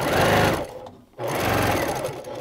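Electric sewing machine stitching a seam along a zipper through the layered pouch fabric, the needle going fast and evenly. It slows and stops briefly about a second in, then starts stitching again.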